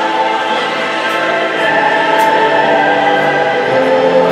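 Music with a choir singing long, held notes; lower voices come in and it grows a little fuller about one and a half seconds in.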